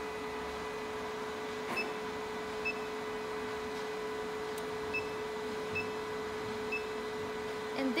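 808nm diode laser hair-removal machine running with its cooling switched on, a steady mid-pitched hum, while its touchscreen gives several short high beeps as buttons are pressed.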